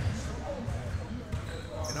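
Basketballs being dribbled on a gym floor, a run of irregular low thuds, with faint voices in the background.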